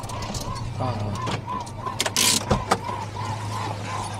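Pickup truck engine running at low speed as the truck pulls slowly across a dirt yard, a steady low hum, with children's voices over it and a brief hiss about two seconds in.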